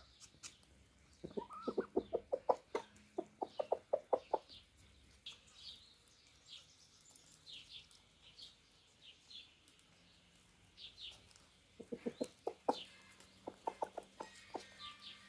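Domestic chickens clucking in quick runs of short calls, about five a second: one run starts about a second in and lasts a few seconds, and another comes near the end. Short high chirps fall in between.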